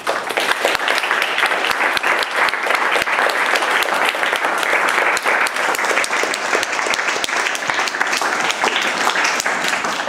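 Audience applauding: many hands clapping, starting suddenly and holding steady.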